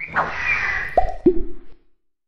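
Cartoon sound effects of an animated logo intro: a swishing sweep, then two quick plops that drop in pitch, the second lower, about a second in. The sound cuts off abruptly near the end.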